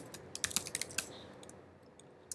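Computer keyboard typing: a quick run of keystrokes through the first second, then it stops.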